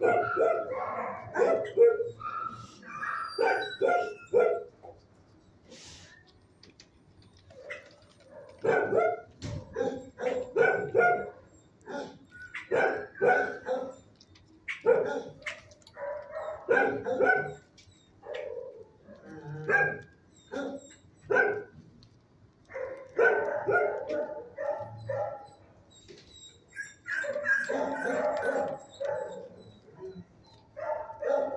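Dog barking in bursts of several barks, with quieter pauses of a second or more between the bursts.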